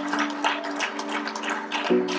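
Congregation clapping, with a keyboard holding a sustained chord underneath.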